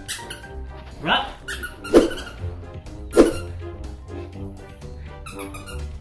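A squeaky dog toy squeezed by hand, giving three loud squeaks about a second apart, over background music.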